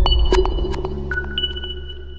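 Electronic station-ident jingle: a deep bass boom fading away under sparse sharp clicks and clear high pinging tones, several of which start about a second in and ring on as the whole sound slowly dies down.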